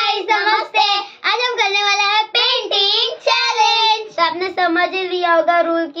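Two children singing together in high voices, a run of held, sliding notes; about four seconds in the tune drops lower and the notes come quicker.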